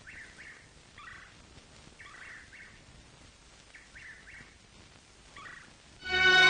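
Faint bird calls in the background: short, separate calls, some in pairs, repeating irregularly about once a second over a low hiss.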